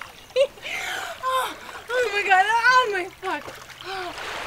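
Water splashing as people wade and play in shallow water, with wordless laughing and squealing voices over it, loudest in a high wavering squeal about two seconds in.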